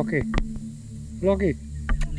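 Two short falling vocal sounds from a person, one at the start and one a little past halfway, over a steady low hum.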